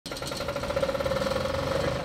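An engine running steadily, with a fast pulsing throb and a steady whine over it.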